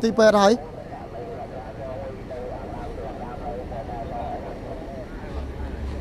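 Street background of faint, distant voices after a man's nearby speech stops about half a second in. A low vehicle engine rumble comes in near the end.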